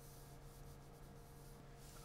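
Faint scratching of a colored pencil drawing a light line on paper, over a low steady hum.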